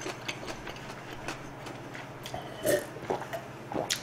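A man drinking water in gulps from a glass jar, with small wet mouth and swallowing clicks throughout and one louder gulp about two and a half seconds in.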